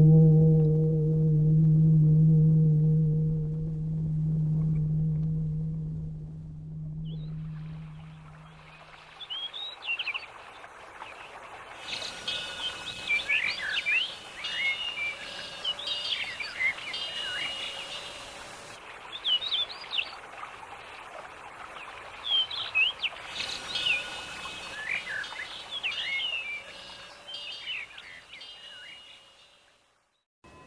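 A low, deep tone with overtones fades away over the first eight seconds or so. Then birds chirp and sing in quick, short calls that run on almost to the end.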